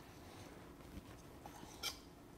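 Faint handling sounds of a seared piece of beef rolled by hand in its juices on a cutting board: a few small ticks and one short soft swish near the end, over quiet room tone.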